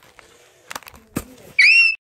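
Two knocks from the phone being handled, then near the end a short, loud, high-pitched squeal lasting about half a second.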